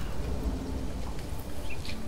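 Outdoor ambience with a low, even background and a few short bird chirps, one at the start and a pair near the end.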